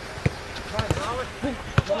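A football being kicked on an artificial-turf pitch: three sharp thuds of foot striking ball, the last the loudest.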